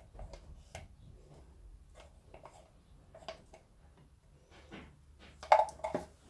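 Faint, scattered taps and scrapes of a paint scraper stick against a plastic paint bottle and cups as the last of the paint is scraped out, with one sharper knock near the end.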